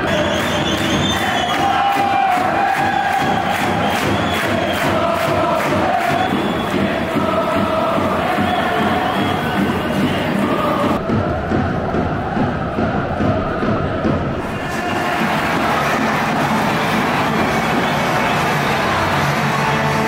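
A stadium crowd of football supporters singing a chant in unison over a steady drumbeat. From about ten seconds in, the beat gives way to a more even roar of crowd noise.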